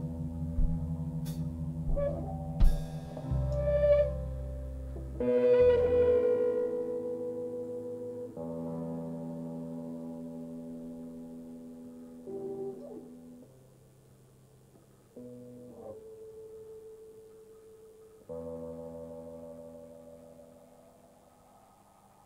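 A live rock band's song ending. A few drum and cymbal hits come in the first seconds, then a string of held chords, each struck anew every few seconds and left ringing until it fades, growing fainter toward the end.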